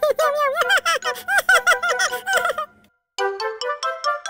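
A cartoon kitten character's high-pitched giggle, a rapid run of short laughing pulses that stops about two and a half seconds in. After a brief gap comes a rising run of short musical notes.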